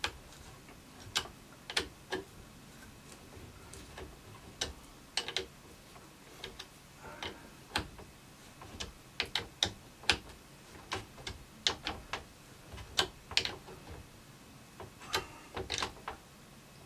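A hex key turning a threaded insert nut into a hole in pallet wood by hand: small, irregular metallic clicks and ticks as the key bites, turns and is reset in the insert.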